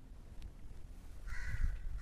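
A crow cawing once, a harsh call starting a little over a second in and lasting under a second.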